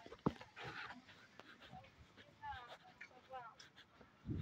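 Faint, high-pitched voices in short snatches of talk, with a sharp click about a quarter second in.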